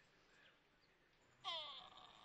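Near silence, broken about one and a half seconds in by a brief sound with falling pitch.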